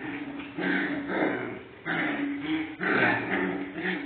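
Puppies growling and yapping in several short bursts as they play-fight.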